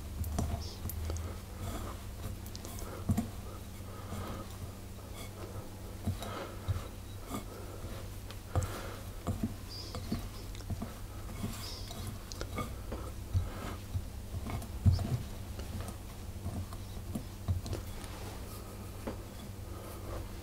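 Hands squeezing and rubbing crumbly biscuit dough in a glass mixing bowl: a soft, irregular patter of rustles with occasional light clicks of fingers against the glass, as the dough is just coming together after the milk has gone in. A faint steady low hum runs underneath.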